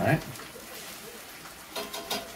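Faint, steady sizzle of chicken frying in a pan.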